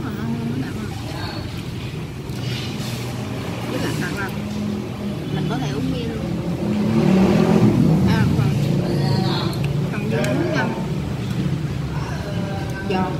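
Background voices chattering over a steady low rumble of road traffic. The rumble swells louder about seven seconds in.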